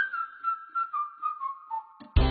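A single whistled tone that slides down in small steps, from a high pitch to a noticeably lower one, over about two seconds.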